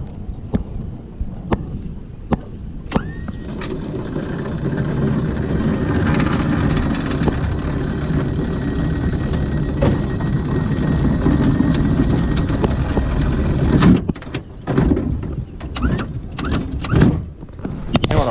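Electric anchor winch starting about three seconds in and running steadily for about eleven seconds as it hauls the anchor rope and chain up over the bow roller, then cutting off. Sharp clicks and knocks come before it starts and after it stops.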